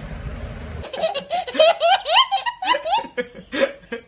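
A small child's hearty laughter, a quick run of high-pitched laughs starting about a second in and cutting off abruptly near the end, from an edited-in clip of a laughing toddler.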